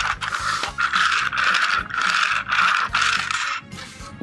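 Small plastic toy engine pushed by hand along plastic toy track, its wheels rattling and clattering in a string of short uneven bursts. The track is awkward and bumpy to run on, not a good track for running anything on.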